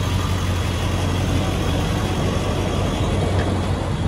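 Steady rumble of idling vehicle engines and traffic, with a constant low hum underneath.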